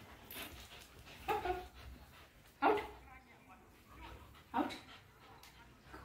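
A dog gives a short vocal sound about a second in while a puppy plays tug with a toy, between a woman's spoken commands.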